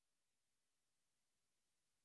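Near silence: only a faint steady hiss.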